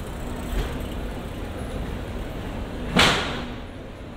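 Outdoor street ambience of a busy pedestrian shopping street, a steady mix of distant voices and traffic hum. About three seconds in, one sharp bang, the loudest sound, rings out and dies away within half a second; a smaller knock comes near the start.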